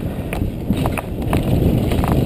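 Downhill mountain bike descending a dirt trail at speed: tyres rolling over dirt and leaf litter, with irregular sharp clacks and rattles from the bike over bumps, under a steady rush of wind on the microphone.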